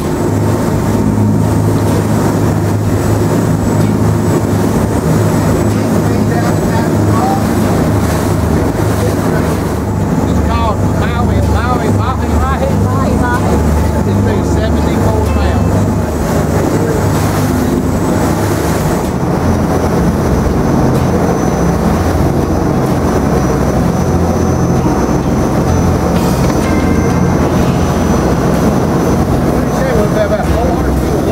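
Sportfishing boat's engines running at speed, a loud steady low drone, with the rush of water from the hull and wake.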